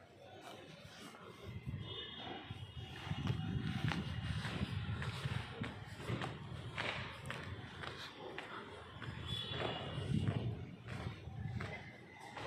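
Footsteps on concrete stairs, with uneven low rumbling and scattered clicks from handling of the phone.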